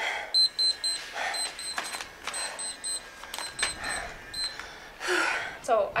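An electronic interval timer beeping in quick runs of short, high beeps, marking the end of the workout's last interval. Heavy breathing from the exerciser comes between the beeps, with a few sharp clicks.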